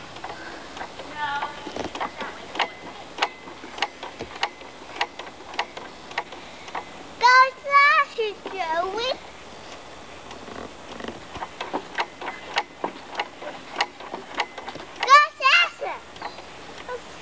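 A toddler's high-pitched laughing squeals, once about seven seconds in and again near the end, over a regular run of light clicks about one every half second or so.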